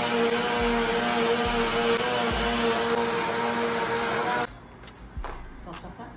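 Electric blender motor running steadily while blending a passion fruit mousse mixture, then switched off suddenly about four and a half seconds in. A few light clicks and knocks follow.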